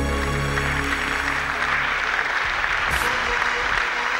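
Audience applauding as the song's last held chord dies away about a second and a half in.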